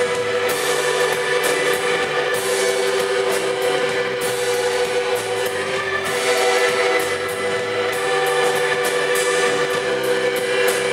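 Live rock band playing an instrumental passage: drum kit with cymbals and snare, electric bass, electric guitar and keyboard, over a sustained held note at a steady loudness.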